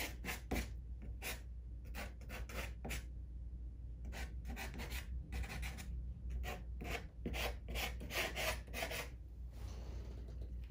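A soft pastel stick scratching and rubbing across pastel paper in many short, uneven strokes as green grass and stems are laid in.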